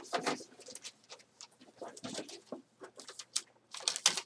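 Hands rummaging through slips of paper in a cardboard box, a run of irregular rustles and crinkles as a slip is pulled out.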